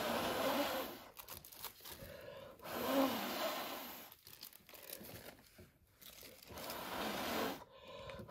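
A person blowing hard by mouth across wet acrylic paint on a canvas to spread it into a bloom. Three long breaths of rushing air, each about a second and a half, with short pauses between.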